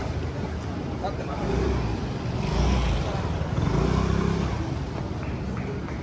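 A motor scooter's small engine passing close by at low speed, loudest from about two to four and a half seconds in, with passers-by talking.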